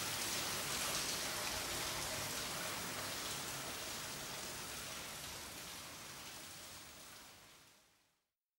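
Recorded rain, a steady hiss of rainfall that fades out gradually and is gone about seven seconds in.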